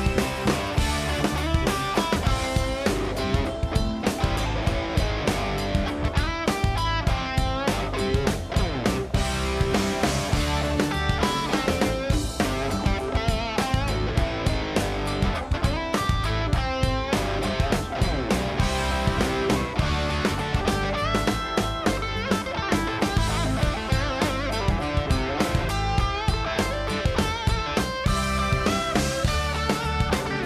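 Live band playing blues-rock: electric bass guitar with drum kit and keyboards, with a steady beat throughout.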